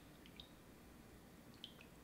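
Near silence with two faint, brief ticks, about half a second in and near the end: a slotted spoon scooping soft cheese curds out of whey in an enamelled pot, whey dripping.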